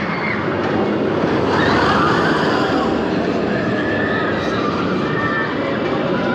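Roller coaster train running along a steel track, a steady loud rumble with faint wavering whine from the wheels on the rails.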